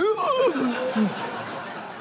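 Theatre audience laughing, the laughter tailing off over about two seconds. A man's drawn-out, falling "oh" sounds over it in the first second.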